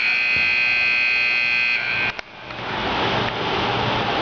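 Indoor arena scoreboard buzzer sounding the end of the game: one steady electronic tone lasting about two seconds that cuts off sharply, then an even rushing hall noise.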